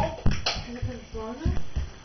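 A brief vocalization, most likely the toddler's, with several low thumps of small footsteps on a hard kitchen floor.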